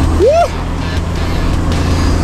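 A four-wheel drive's engine running with a steady low drone as it tows a boat trailer through a river crossing, with a short rising whoop from a voice cheering early on.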